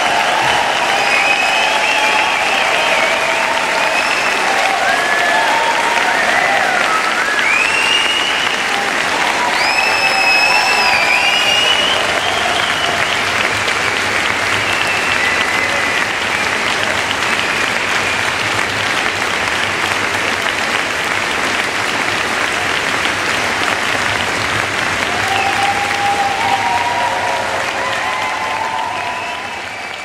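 Concert audience applauding steadily, with whistles and shouted cheers. The applause starts to fade out at the very end.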